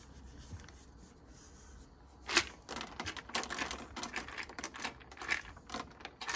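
Shelled peanuts shaken out of a plastic jar, rattling in the jar and pattering onto wooden deck boards: one sharp click a little over two seconds in, then a quick run of many small clicks.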